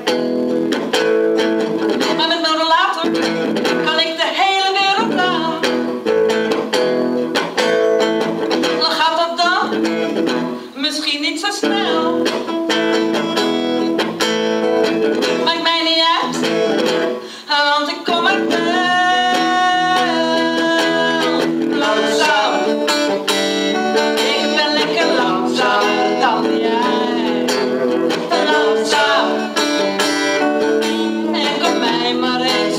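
Electric guitar played through a small amplifier, accompanying a sung vocal line with held notes.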